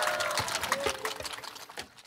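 Audience clapping with a few cheers, fading out over about two seconds until it is nearly gone at the end.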